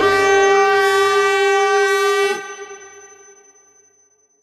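The closing note of an electronic dance track: one sustained, horn-like synth tone held for about two seconds after the beat stops, then dropping away and fading out.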